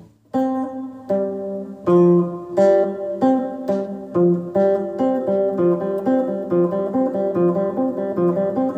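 Electric guitar on a clean tone with reverb, picking a repeating figure of single notes on the G and D strings: fifth fret on G, open G, third fret on D, open G. The notes ring into one another. The playing starts just after the beginning and picks up pace about halfway through.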